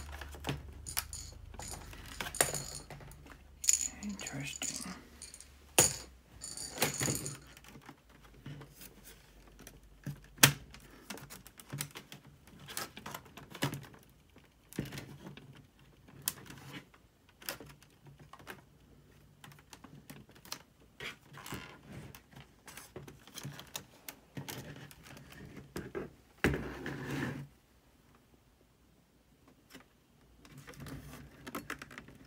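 Irregular clicks, snaps and knocks of plastic clips and the metal palmrest frame of a Dell Inspiron N5110 laptop as the top cover is pried loose by hand, with a few sharper cracks and about a second of denser handling noise near the end.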